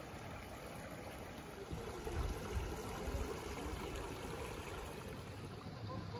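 A small forest creek trickling over rocks, a soft steady water sound, with a louder low rumble swelling about two seconds in.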